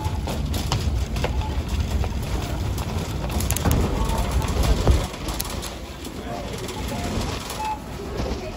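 Shopping cart rolling over a store floor: a steady low rumble from its wheels, with a few clicks and rattles about halfway through, under faint chatter of other shoppers.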